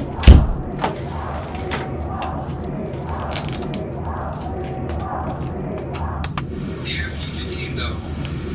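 Backstage room ambience under a steady low rumble: a heavy thump just after the start, then scattered clicks and a short metallic rattle a few seconds in, with faint voices in the background.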